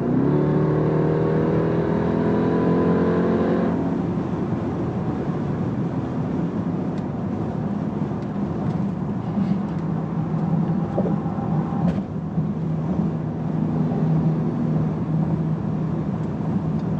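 The Jeep Grand Cherokee Trackhawk's supercharged 6.2-litre Hemi V8, heard from inside the cabin, accelerating hard to pass. Its pitch climbs for about four seconds, then breaks off into a steady low drone at highway cruise, with road noise.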